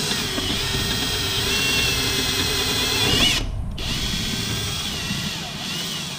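Cordless drill with a small 3/16-inch bit boring a pilot hole through a car's firewall. The motor runs steadily with a whine, stops briefly a little past halfway, then runs again.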